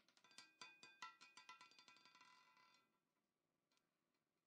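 Roulette ball clattering over the frets and pockets of a spinning roulette wheel as it drops and settles: a quick run of clicks with a metallic ringing tone, dying away about three seconds in.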